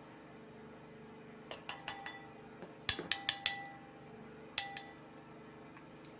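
A teaspoon clinking against glass in three quick runs of sharp clinks, each clink leaving a short ringing tone.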